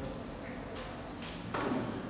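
Classroom background noise with a few soft clicks and one short, louder noise about one and a half seconds in.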